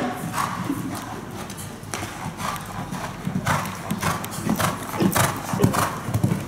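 Hoofbeats of a show jumper cantering on sand arena footing, about two beats a second.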